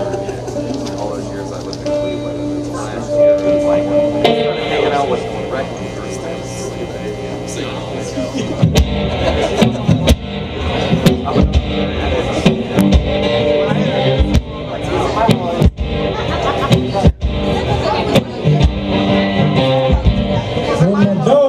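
A one-man band starts a song live, playing guitar and a foot-played kick drum. For the first half, held guitar notes ring out. About halfway through, the kick drum comes in with steady beats under the strumming.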